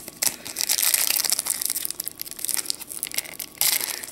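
Foil wrapper of a Pokémon trading card booster pack crinkling and crackling as it is handled and worked open by hand, loudest just before the end.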